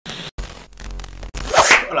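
Glitch-style intro sound effects: electronic noise with a high steady tone that cuts out abruptly twice, then a short noisy swoosh.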